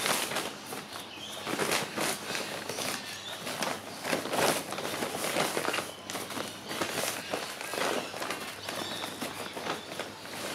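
Irregular scraping and rustling of dry sand being scooped into a plastic measuring container, filled up to its 1200 ml mark.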